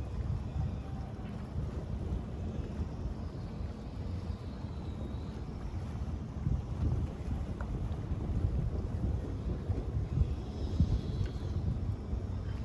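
Strong wind buffeting the microphone in gusts: a fluctuating low rumble, with the strongest gust near the end.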